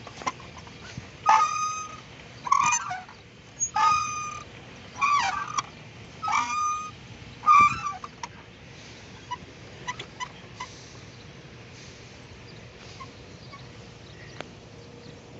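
Playground swing squeaking as it goes back and forth: a pitched squeal about every second and a quarter, alternating between two tones on the forward and back strokes. The squeaking stops about eight seconds in, leaving only a few faint clicks.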